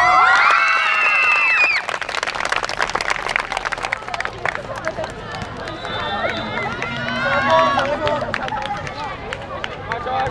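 Loud teenage laughing and shouting on the court, then many quick footfalls and shoe scuffs of players running on the hard court surface. More voices call out a little past the middle.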